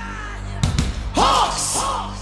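A live rock band playing hard rock over a steady low held note. There is a burst of drum and cymbal hits about half a second in, then twice a loud high note that bends up and back down.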